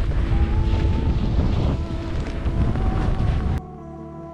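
Heavy wind buffeting on a GoPro's microphone as a skier descends a snow slope, with music faintly underneath. About three and a half seconds in, the wind noise cuts off sharply, leaving the music.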